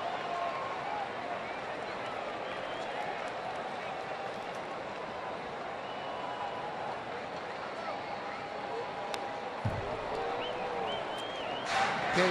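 Ballpark crowd murmuring steadily, with scattered voices. About nine seconds in comes a single sharp pop and a short low thud as a pitch is swung at and missed and lands in the catcher's mitt.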